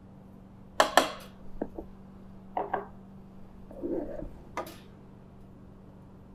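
Small bowls clinking against the stainless steel bowl of a food processor and being set down on the counter as ingredients are tipped in: a scattered handful of short, sharp knocks.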